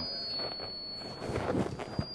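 Public-address feedback: a thin, steady high-pitched ring from the lectern microphone's sound system, fading somewhat after the first moments and coming back stronger near the end.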